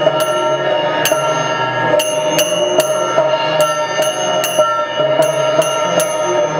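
Temple ritual music: bells and small cymbals struck in a quick, uneven rhythm, about two or three strikes a second, over a steady ringing tone.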